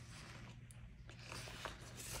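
Faint rustling and a few light taps as a paper sticker sheet and tweezers are handled, over a low steady hum.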